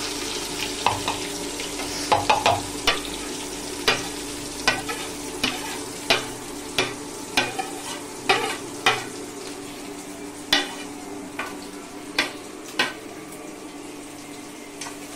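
Chopped onions sizzling in hot oil in an iron kadhai, with a metal spatula clinking and scraping against the pan as they are stirred: repeated sharp clinks over a steady frying hiss.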